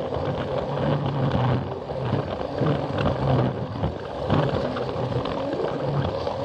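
Plarail toy train running along plastic track, its small battery motor and gears whirring steadily with irregular clicks and rattles as the wheels pass over track joints, heard from on board the train.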